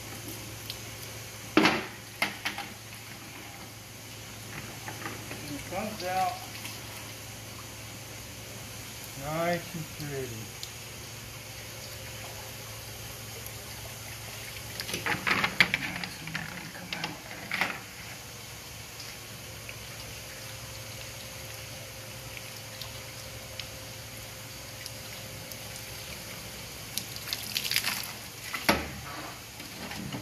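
Steady water running from a garden hose, with sharp knocks and clatter of plastic buckets and wet stones being handled. The clatter comes about two seconds in, again in the middle, and near the end.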